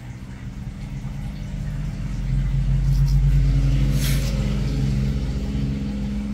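Low engine-like rumble that swells to its loudest about three seconds in, then fades, with a single sharp click about four seconds in.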